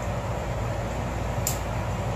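Furrion Chill 15,500 BTU rooftop RV air conditioner running: a steady blower rush over a low hum, with one faint click about one and a half seconds in.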